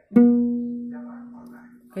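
A single pluck of the second string of a three-string kentrung, a small ukulele-like Indonesian instrument, ringing out as one steady note and slowly fading. The string is still a little flat of its B tuning and is being tightened up to pitch.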